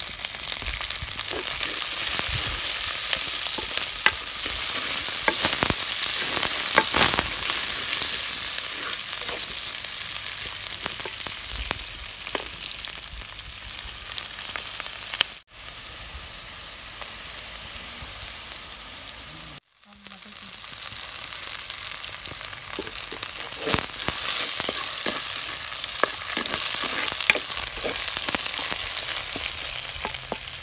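Sliced onions and green chillies sizzling in hot oil in a clay pot, with the clicks and scrapes of a spoon stirring them. The sizzle cuts out briefly twice around the middle.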